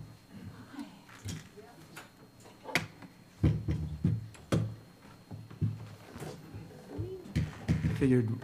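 Scattered knocks, thumps and handling noises, most of them packed into the middle, as a banjo, chairs and crutches are moved about close to stage microphones. Faint murmured voices come and go in the background.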